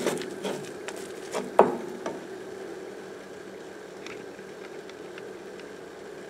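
A plastic spatula scraping and knocking against a nonstick frying pan while scrambling eggs. Several sharp clicks come in the first two seconds, the loudest about one and a half seconds in, over a steady low hum that carries on afterwards.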